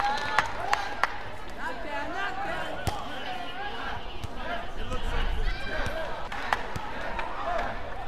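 Badminton rally: a few sharp hits of racket on shuttlecock, spaced out over the rally, amid squeaking court shoes and arena voices.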